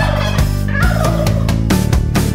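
A turkey gobble, a quick wavering warble in the first half, over a children's song backing track with a steady beat.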